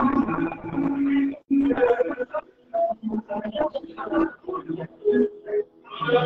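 Voices speaking in a hall, in short phrases with brief pauses.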